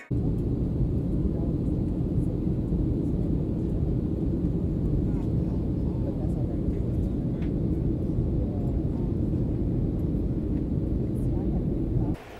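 Steady low rumble of a jet airliner's cabin in flight, heard from a window seat, with faint voices under it.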